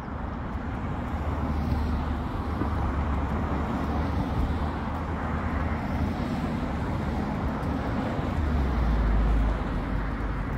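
Road traffic noise from a street: a steady hiss of passing cars with a low rumble, a deeper rumble swelling near the end and then falling away.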